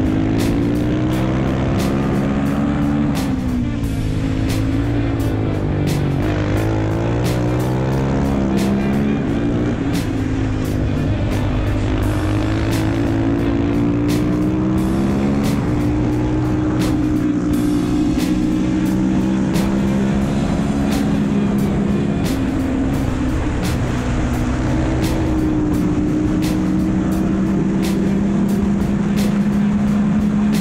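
Husqvarna supermoto's single-cylinder engine pulling hard up a mountain road, its pitch climbing through each gear and dropping at every shift, with wind rushing past the bike.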